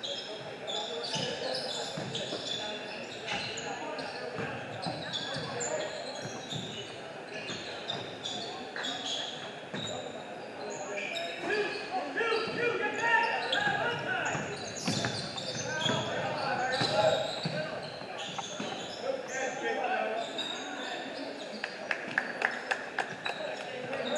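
Basketball game sounds in an echoing gym: a ball bouncing on the hardwood floor, sneakers squeaking and players' and spectators' voices calling out. The voices get louder in the middle.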